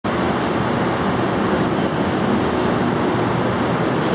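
Steady, loud traffic noise, an even rumble that neither rises nor falls.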